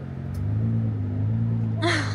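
A woman's short, high-pitched excited squeal near the end, over a steady low drone inside a car.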